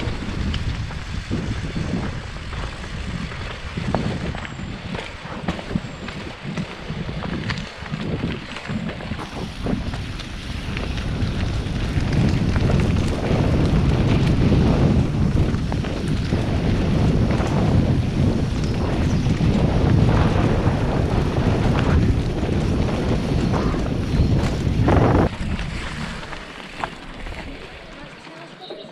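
Wind buffeting the microphone of a camera on a mountain bike riding down a rocky dirt trail, with knocks and rattles of the bike over stones and roots. A sharp knock comes near the end, and then the noise eases as the bike slows.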